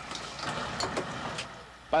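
Running noise inside the driver's cab of a diesel railcar, an uneven rumble with faint rattles and clicks as the controls are worked.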